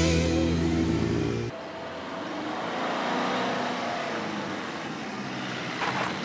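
Background music that cuts off abruptly about a second and a half in. It gives way to the steady noise of a Fiat taxi's engine and tyres on a cobbled street.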